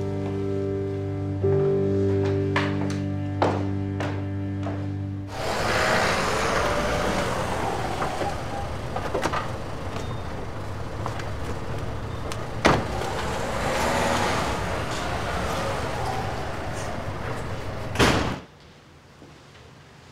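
Music with held notes, then from about five seconds in the steady noise of a running car in the street with a few knocks, ending near the end with a loud thump of a car door slamming shut.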